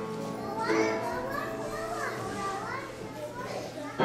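Several children's voices calling out over one another, high and overlapping, as the background music fades out in the first second.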